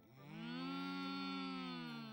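One long, drawn-out cow moo that rises at the start, holds steady, then slides down in pitch as it fades.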